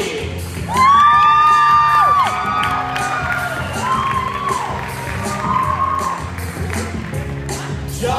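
Music with a steady beat playing through a hall, with audience members screaming and cheering over it; long high screams are loudest from about a second in to about two seconds, with shorter cheers after.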